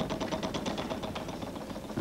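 Game-show prize wheel spinning, its pointer flapper clicking rapidly and evenly against the pegs around the wheel's rim.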